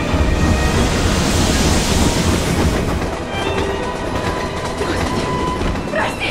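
Film soundtrack of a steam locomotive pulling in: a heavy low rumble with a rush of steam hiss that swells in the first few seconds and then fades, under dramatic music.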